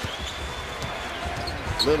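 Basketball dribbled repeatedly on a hardwood arena court, short thuds over the steady murmur of an arena crowd.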